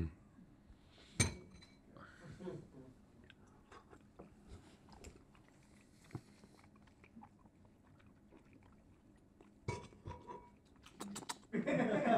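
Quiet eating of soupy oatmeal: metal spoons tapping and scraping ceramic bowls, with soft mouth sounds of tasting. There is a sharp tap about a second in and a quick run of clicks near the end.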